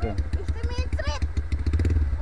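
Enduro dirt bike engine running at low idle, a steady low pulsing throb, with voices calling over it.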